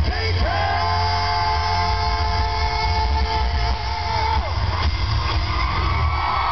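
Live rock band playing loud, with heavy bass and a singer holding one long note for about four seconds before the melody moves on, recorded from within the crowd.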